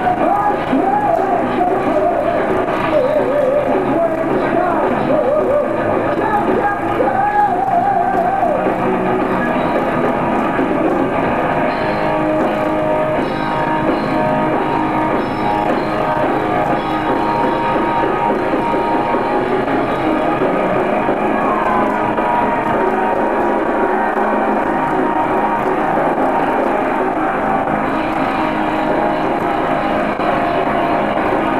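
Live power metal band playing at full volume, with distorted electric guitars and drums. A wavering lead line with vibrato stands out over the band in the first several seconds.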